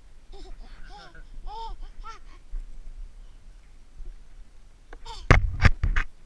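A young child's high voice making a quick run of short rising-and-falling sounds, like babbling giggles. Near the end come several loud thumps and bumps on the body-worn camera's microphone as it swings.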